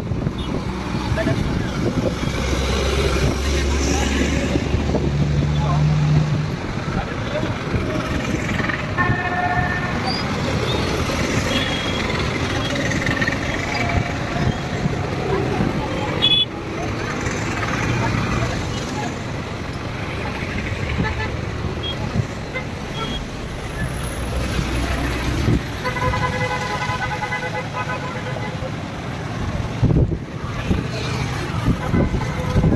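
Road traffic of motorcycles, scooters, an auto-rickshaw, cars and a truck passing on a wet road, with a low engine drone in the first few seconds. A vehicle horn sounds briefly about nine seconds in, and a longer horn blast comes near the end.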